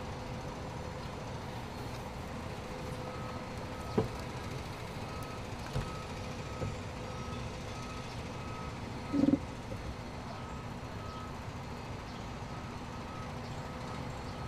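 A vehicle's reversing alarm beeping steadily at one pitch, about one and a half beeps a second, over a steady hum of street traffic. A few soft knocks and one short, louder low sound come about two-thirds of the way through.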